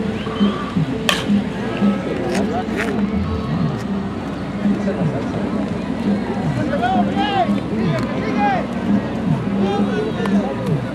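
Sharp crack of a baseball bat hitting the ball about a second in, then voices of spectators and players shouting, over background music with a steady beat.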